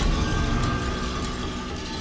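A sudden loud low boom with a dissonant drone of several held tones above it, slowly fading: horror-film score sound design.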